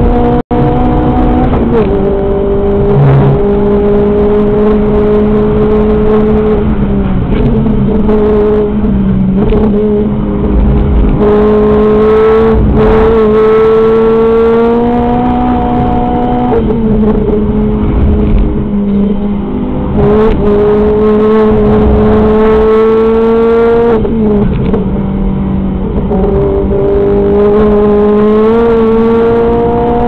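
Renault Clio RS engine heard loud from inside the caged cabin, driven hard at high revs. Its pitch holds or climbs slowly, then steps down or swings several times with gear changes, over steady road and tyre rumble.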